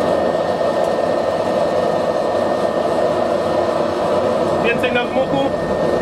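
Forced-air propane forge burner and its electric blower running, a steady rushing noise of flame and blown air. Air and propane have just been turned up together, which keeps the flame lit in the forge while it is not yet hot.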